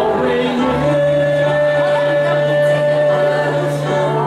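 A slow Chinese worship song sung by a group, led by a man, with one long held note from about a second in over a steady low accompaniment.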